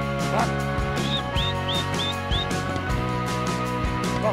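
Background music with a steady beat and sustained tones, with a quick run of five short high chirps in the middle.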